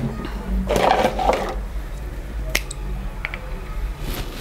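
A steady low drone under a short rustle about a second in, then a few light clicks of cosmetic bottles being picked up and set down on a dressing table.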